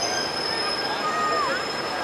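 Bicycle brakes squealing as a pack of racing riders slows. Several high squeals sound at once, and a lower squeal slides down in pitch about a second and a half in.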